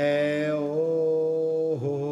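A man's voice singing a slow chant-like melody. It slides up into a long held note, breaks briefly near the end, then settles on another held note, over acoustic guitar.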